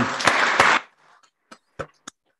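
Brief applause for under a second, thinning out into three single hand claps near the end.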